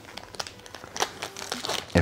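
Foil wrapper of a Pokémon booster pack crinkling as it is worked open by hand: a run of small, irregular crackles with a sharper one about a second in.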